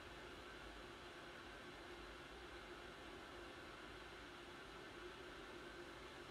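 Near silence: steady faint hiss of room tone.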